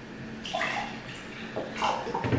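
Water poured from a large plastic bottle into a drinking glass, gurgling out in two spurts.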